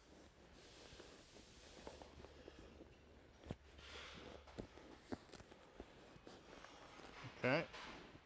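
Faint rustling of a vinyl cushion cover and foam being worked by hand, with a few light ticks, the sharpest about three and a half seconds in.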